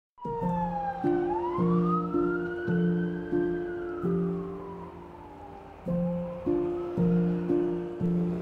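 A police siren wailing, one slow rise and fall in pitch that starts rising again near the end, over background music.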